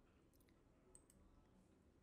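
Near silence, with a few faint clicks about half a second and a second in.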